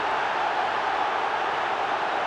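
A large football stadium crowd cheering a goal, a steady wall of noise with no single voice standing out.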